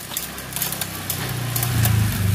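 Giant OCR bicycle's 2×9-speed Shimano drivetrain turned by hand: the chain runs over the rear cassette and derailleur with light clicking, while the spinning rear wheel whirs, growing louder toward the end.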